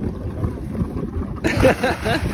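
Low rumble of wind on the microphone from the boat, then a loud splash about one and a half seconds in as a person plunges into the lake water.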